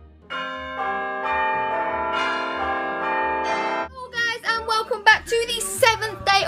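Bell-like chime chord held for about three and a half seconds, more notes joining as it goes, then cut off suddenly. A girl starts talking after it.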